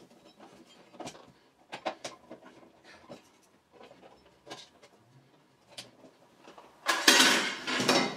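Light clicks and taps of plastic and metal parts being handled as a small solar charge controller is taken apart, then a louder, longer scraping clatter about seven seconds in.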